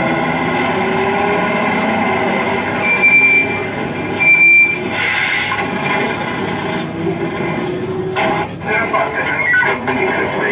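Arcade ambience: a dense, steady mix of machine sound effects and voices. Two short, high beeps come about three and four and a half seconds in.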